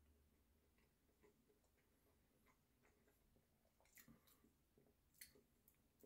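Near silence, with faint chewing of a breakfast sandwich on a biscuit: a few soft mouth clicks, the clearest about four seconds in and again about five seconds in.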